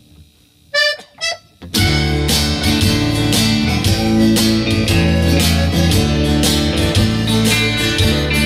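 A small band strikes up about two seconds in, after a quiet start with a couple of short notes. A button accordion carries the melody over strummed acoustic guitar, electric guitar and bass guitar in the instrumental intro of a country-style song.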